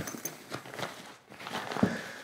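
Zip on a nylon camera rucksack's front pocket being pulled open, with the fabric flap rustling as it is handled.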